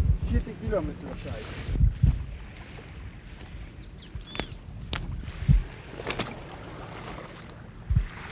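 Outdoor wind noise buffeting the microphone, with several low thumps and a few short, high chirp-like glides a little past the middle.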